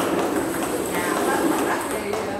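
Table tennis forehand rally: the ball clicking back and forth off the paddles and bouncing on the table, with people talking in the background.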